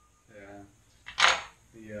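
A man's voice: a short voiced sound, then a breathy burst of laughter about a second in.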